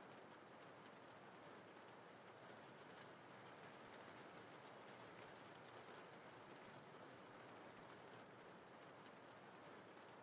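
Near silence: a faint, steady rain-sound bed.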